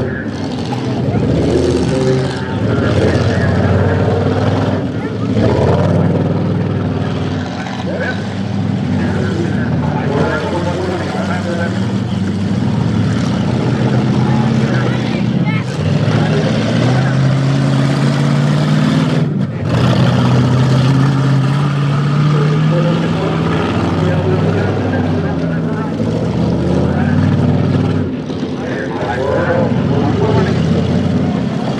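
Engines of full-size demolition derby cars running loud throughout, their pitch rising and falling as the drivers rev and back off.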